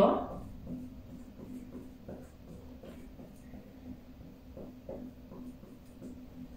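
Marker pen drawing on a whiteboard: a string of short, faint squeaks and taps as small circles are drawn one after another, over a low steady hum.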